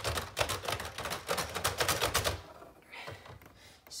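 Plastic keys and hammer action of a Lego Ideas Grand Piano (set 21323) clattering as a hand runs quickly over the keys: a fast run of clicks, about ten a second, with no notes. It stops about two and a half seconds in, leaving a few faint knocks.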